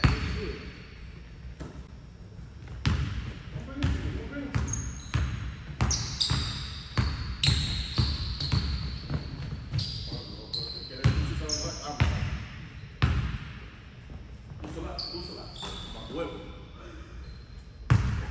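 Basketball bouncing on a hardwood gym floor, dribbled in a run of about two bounces a second, with a lull near the end and one hard bounce at the very end. Short high squeaks of sneakers on the hardwood come between the bounces, and everything echoes in the large gym hall.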